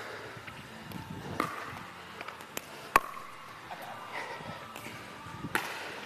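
Pickleball rally: paddles hitting a plastic pickleball, several sharp pops a second or so apart, the loudest about three seconds in, each ringing briefly in the indoor hall.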